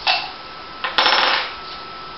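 A plastic travel tube of makeup brushes being opened and handled: a short scrape at the start, then about half a second of clattering with sharp clicks around the middle as the brushes knock against the tube.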